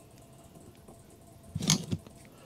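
Faint room tone, then a short rustling clatter about a second and a half in as insulated wires and plastic crimp nuts are handled.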